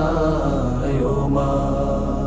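Background music: a Bengali mourning song, with a long held vocal note over a steady low drone between sung lines.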